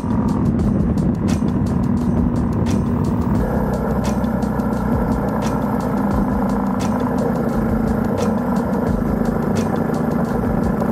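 Background music with a steady beat over the Honda CB400SS's single-cylinder motorcycle engine running on the road. The sound shifts about three and a half seconds in.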